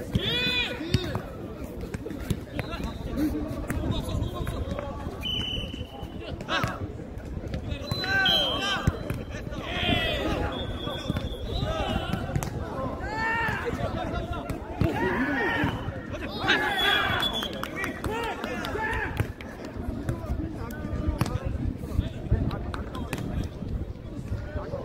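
Players shouting short calls and encouragement back and forth during a jokgu rally, with scattered thuds of the ball being kicked and bouncing.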